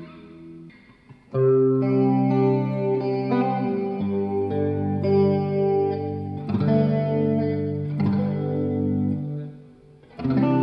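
Bacchus BJM offset electric guitar playing clean, ringing chords through a Laney Lionheart L20T-212 all-tube amp, with compressor, chorus, reverb and delay pedals on and the drive pedals off. After a brief near-quiet gap about a second in, the chords sound out, changing every second or two, and die away just before the end.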